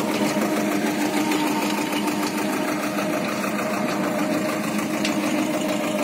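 An engine running steadily with a fast, even pulse, under load as it draws a cultivator between rows of young crop plants.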